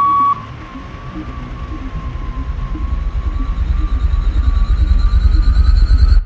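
A steady electronic beep ends about a third of a second in, and a low pulsing drone follows, with a thin high tone slowly rising over it, swelling steadily louder to the end.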